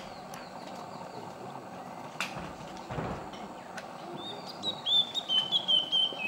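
Small songbird calling: faint scattered chirps at first, then from about four seconds in a run of clear whistled notes, stepping slightly down in pitch, over a steady forest background hiss.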